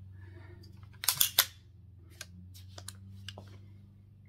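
PSA AR-15 rifle with a CMMG .22LR conversion kit being handled by hand: a quick run of loud metal clacks about a second in, then a few lighter, separate clicks of its parts.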